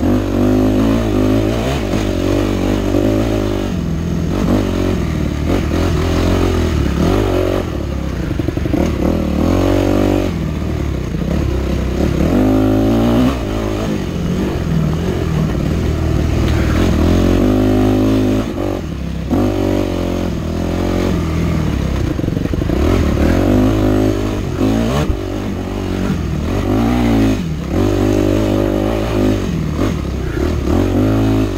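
Yamaha 250F four-stroke single-cylinder dirt bike engine under hard riding, revs repeatedly rising and falling as the throttle is worked and gears change.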